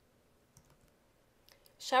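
A pause in the narration: near silence with a few faint clicks, then a woman's voice starts speaking near the end.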